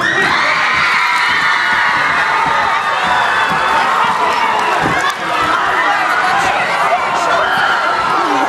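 A crowd of teenage students cheering and screaming together. It breaks out suddenly and holds at full strength.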